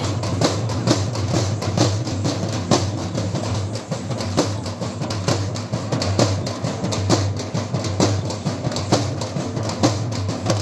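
Dappu frame drums beaten with sticks in a steady, driving rhythm, a few sharp strokes a second, over a steady low hum.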